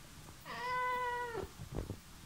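A grey tabby domestic cat meowing once, a single call held for about a second and dropping in pitch as it ends. A few faint clicks follow near the end.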